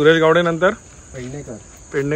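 Men calling out a loud, long-held shout at the start and again at the end, with quieter voices answering in between like a call-and-response chant, over the steady high trill of crickets.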